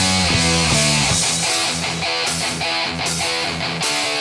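Thrash metal song in an instrumental passage without vocals: electric guitars and bass guitar playing at full band volume.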